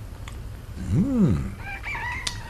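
Rooster crowing, a sound effect marking early morning, with a short low sound rising and falling in pitch about a second in.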